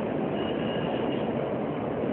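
Steady, noisy rumble with no speech, and a faint high tone for under a second near the middle.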